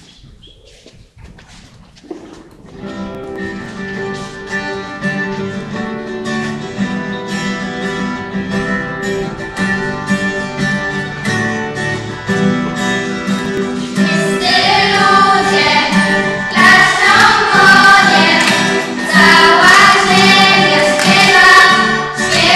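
A guitar starts playing a few seconds in, and about halfway through a group of girls' and women's voices joins it, singing a hymn that grows loud.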